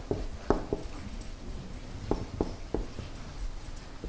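Marker pen writing on a whiteboard: a string of short, sharp squeaks and taps as letters are stroked out, in two clusters with a pause between.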